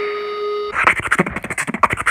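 Edited-in comic sound effects: a steady electronic tone like a telephone line tone, cutting off under a second in, then a fast run of short, sharp, rasping sounds, about eight a second.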